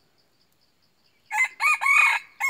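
Red junglefowl cock crowing: a loud, broken crow that starts a little past halfway. Before it there is only faint, regular insect ticking.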